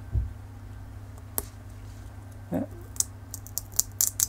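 A few small sharp clicks and ticks from fingers handling the thin circuit board and plastic shell of a torn-open SD card, with a soft low bump near the start and a steady low hum under it all.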